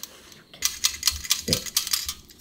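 A hand rubbing damp rice flour through a stainless-steel sieve: rapid gritty scratching with many small clicks, starting about half a second in.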